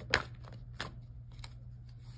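Tarot cards being handled from the deck: a few short, crisp card snaps, the first and loudest just after the start, over a low steady hum.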